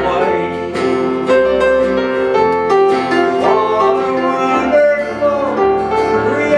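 Southern gospel song played live on several acoustic guitars, with a man singing the melody over the strummed chords.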